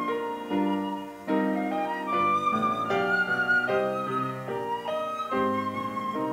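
A silver concert flute plays a melody of held notes over sustained piano chords.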